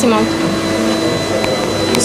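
A machine running with a steady hum and a faint, constant high whine.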